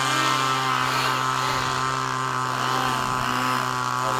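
A steady mechanical drone with a constant pitched whine, unchanging in pitch and level.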